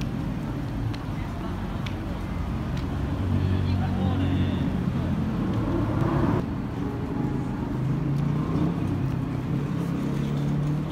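City street ambience: the steady hum of passing and idling road traffic with passers-by talking, changing abruptly about six seconds in.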